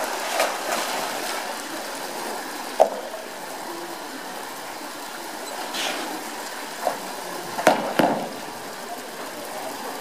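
Polar bear splashing as it swims and pushes a floating ball, over a steady rush of running water. A few sharp knocks, one about three seconds in and two close together near the eight-second mark.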